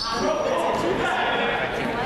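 Basketball game in a gym: indistinct shouting voices of players and bench echoing in the hall, with a short high sneaker squeak on the hardwood floor at the start.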